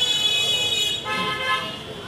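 Vehicle horns honking: a higher-pitched steady horn for about the first second, then a lower-pitched one for about another second.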